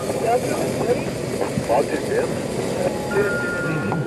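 Steady rushing noise with faint, indistinct voices in it; a thin steady tone sounds briefly in the last second.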